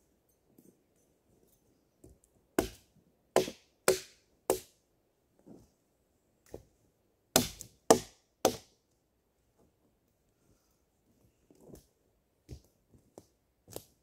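A hand-held blade chopping into a fallen dead log. It strikes sharply in two runs, four strokes and then three, about half a second apart, with a few fainter knocks between.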